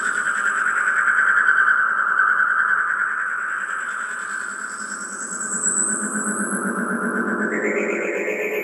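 Electronic synthesizer sounds played live on a keyboard: a sustained, shrill drone with a thin high tone above it, slowly swelling and fading. Near the end the drone bends upward in pitch.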